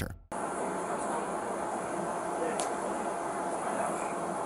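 Steady hiss of outdoor background noise on police camera audio at a roadside sobriety-test stop, with a faint click about two and a half seconds in.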